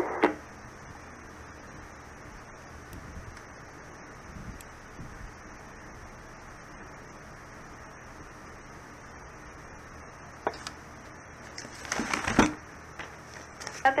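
Steady hiss of an air traffic control radio channel between transmissions. A single click comes about ten and a half seconds in, and a short burst of noise follows about twelve seconds in, the loudest moment.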